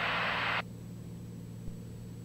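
Low, steady drone of the Cessna Turbo 206's turbocharged six-cylinder engine and propeller, heard through the headset intercom. A hiss over it cuts off suddenly about half a second in, leaving only the low hum.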